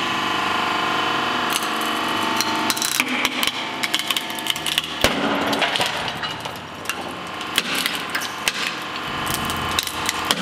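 Hydraulic press running with a steady hum as its ram crushes an AMF Powerball bowling ball. The ball's shell and pink core break with a run of sharp cracks and snaps from about a second and a half in, the loudest about five seconds in.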